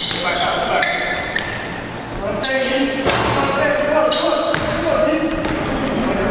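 Live basketball game sound in a gym: a basketball bouncing on the gym floor, short high squeaks of sneakers, and players' voices calling out, all with the echo of a large hall.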